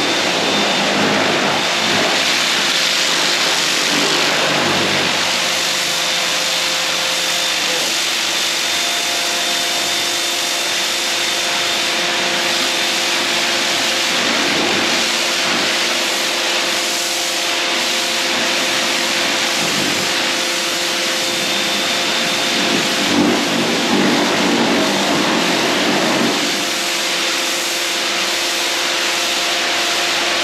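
Stihl pressure washer running steadily with its rotary turbo nozzle, the pump's hum under the hiss of the water jet spraying the wall. The spray grows a little louder for a few seconds near the end.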